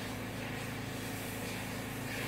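A steady, low mechanical hum with no sudden sounds.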